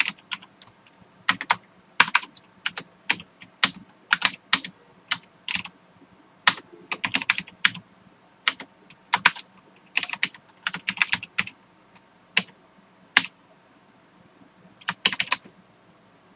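Computer keyboard typing: irregular runs of sharp key clicks, with a pause of about a second and a half near the end before a final short burst.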